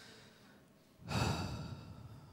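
A man's breath and then a louder sigh into a close handheld microphone; the sigh starts about a second in and fades away.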